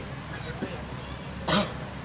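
A man clears his throat once, briefly, about one and a half seconds in, close to a handheld microphone.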